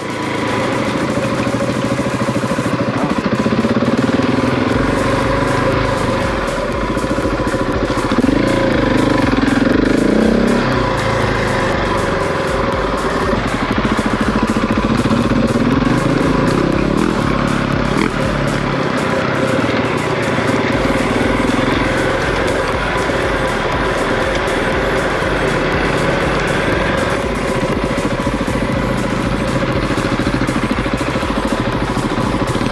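Husqvarna 701's single-cylinder engine running under way on a dirt trail, its pitch rising and falling with the throttle, over a steady rush and rattle on the camera microphone.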